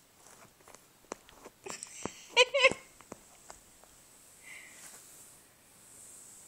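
A cat rummaging in a fabric bag: rustling of cloth with scattered small clicks, louder for about a second near the middle. Inside that burst comes one short, wavering high-pitched call, the loudest sound here.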